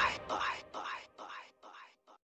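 Echo tail at the end of a music remix: a short vocal sound repeats about every 0.4 s, each repeat fainter than the last, and dies away at the end.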